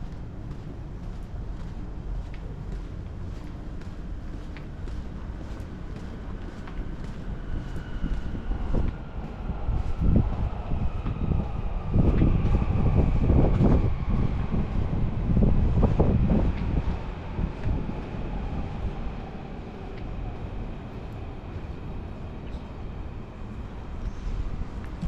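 An electric train passing on nearby tracks: a rumble that swells to its loudest in the middle and then fades, with a motor whine that slowly falls in pitch.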